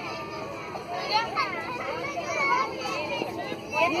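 A group of young children's voices chattering and calling over one another, with an adult's voice starting to speak near the end.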